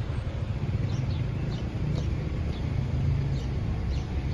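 Low steady rumble of nearby street traffic, with small birds in the trees giving many short, high, falling chirps over it.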